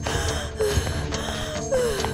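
A woman gasping and moaning in pain, two short falling moans, over a low, steady dramatic music score.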